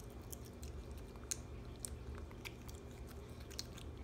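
Capuchin monkey chewing cake: faint, scattered short clicks over a low steady hum.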